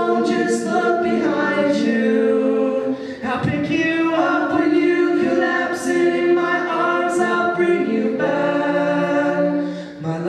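Several voices singing a live rock song's refrain together in long held notes, with the instruments low in the mix.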